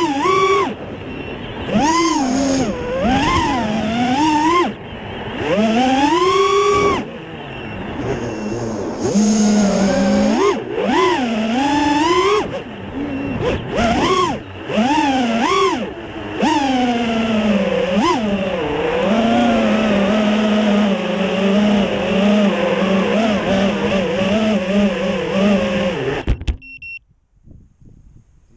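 FPV quadcopter motors whining, the pitch swooping up and down sharply with each burst of throttle, then holding a steady lower pitch for several seconds before cutting out abruptly near the end.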